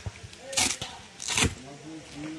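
Two short rustling swishes, about half a second and a second and a half in, as the black protective cover on a bass speaker cabinet is handled and pulled during unpacking.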